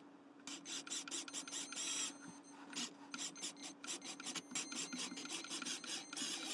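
Small electric motors and plastic gears of a LEGO Technic remote-controlled climbing vehicle working under load: a rapid, irregular clicking and rasping over a faint steady hum.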